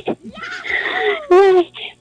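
A person laughing: a breathy, high laugh with a falling squeal, ending in a short voiced burst of laughter or a word.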